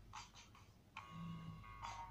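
Faint rustling of knit cotton fabric being handled, a few short soft bursts, with quiet background music coming in about a second in.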